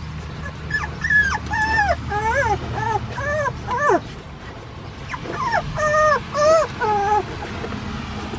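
San'in Shiba puppies about 25 days old whimpering and yelping in short, high-pitched cries while they scuffle with each other. The cries come in two runs, one from about a second in until four seconds, the other from about five to seven seconds.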